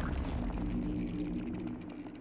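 Intro sound effect for an animated logo reveal: the tail of a deep boom dying away into a steady low drone, with faint scattered crackles above it, fading out.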